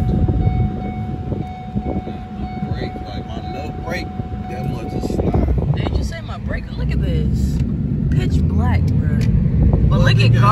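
Road and engine noise inside a moving car's cabin, a steady low rumble, with a thin steady whine that stops about halfway through.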